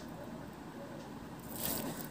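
Faint scratching of a pen writing on paper, with a slightly louder stroke near the end, over low room noise.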